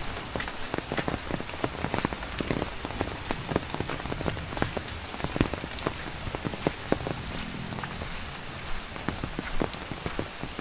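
Rain falling in a steady hiss, with large drops tapping irregularly and sharply on an umbrella overhead.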